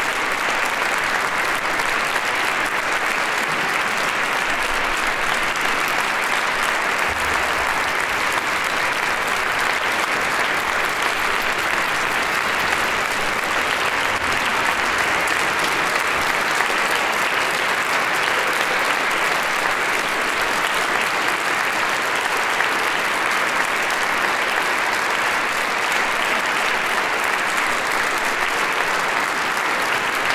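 Audience applauding steadily: sustained, even hand-clapping from a large concert audience.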